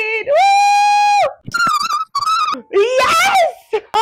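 A woman's excited, high-pitched held shout lasting about a second, followed by more shouting and laughter.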